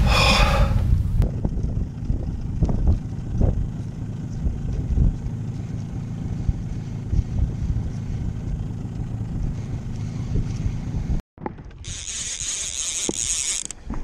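Steady low rumble of a small fishing boat under way at trolling speed, with wind buffeting the microphone. Near the end the sound drops out for a moment, then a high hiss follows for under two seconds.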